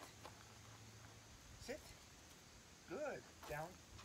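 Quiet outdoor background with a faint, steady high insect drone, broken near the end by a man's short spoken commands to a dog.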